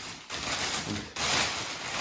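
Thin plastic packaging film rustling and crinkling as it is pulled back off a scooter's handlebar stem, in two stretches with a short break about a second in.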